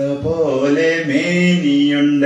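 A man singing a Malayalam children's action song without accompaniment, drawing out long held notes that slide from one pitch to the next.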